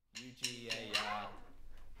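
A young man's voice, singing quietly and unaccompanied.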